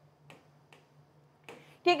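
Four faint taps on an interactive whiteboard's touch screen, spread over about a second and a half, as the pen tool is picked from the on-screen menu; a woman's voice starts near the end.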